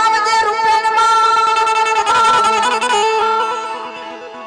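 Harmonium holding sustained reed chords and stepping through a melody in an instrumental passage of a Gujarati devotional song, with no voice; the music dies away near the end.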